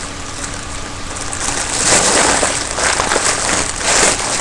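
Foil helium balloon being handled and crinkled, then a rushing hiss that grows louder about halfway through as helium is drawn from its neck by mouth.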